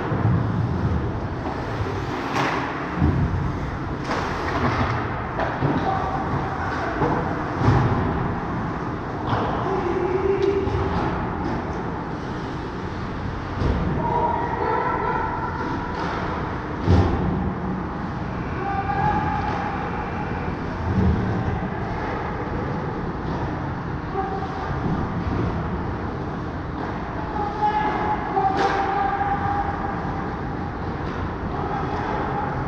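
Ice hockey game sounds in a rink: a steady noisy background of skates and arena hum, broken by several sharp clacks of sticks, puck or boards, the loudest about halfway through, and a few short distant calls from players.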